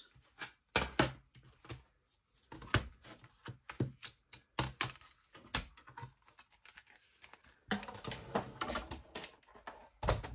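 Irregular clicks and taps of clear plastic cutting plates, a thin metal die and carton card being handled and stacked on a tabletop. Near the end the knocks come closer together with some scraping as the die-cutting machine is moved into place.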